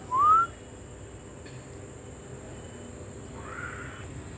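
A person whistles one short, rising note, and a fainter rising whistle follows near the end.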